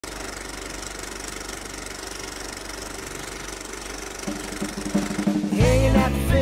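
Film-projector clatter sound effect, a steady fast mechanical rattle, running under a film-leader countdown. A low steady tone joins about four seconds in, and loud rock theme music with singing cuts in just before the end.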